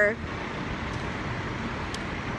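Steady, even background noise of fire truck engines running.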